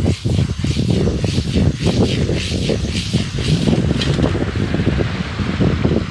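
Strong wind buffeting the microphone, a loud, uneven rumble that rises and falls.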